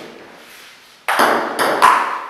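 Table tennis ball struck by a paddle and bouncing on the table on a serve: three sharp, ringing clicks about a second in, spaced roughly a quarter to half a second apart.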